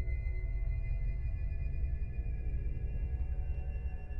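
Dark ambient horror score: a steady low rumbling drone with thin, high sustained tones held above it, one of them slowly rising in pitch.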